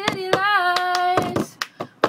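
Cup-song rhythm: hand claps and a plastic cup slapped and tapped on a table, under a female voice holding a sung note. The singing stops about a second in, and the cup and clap strokes carry on alone.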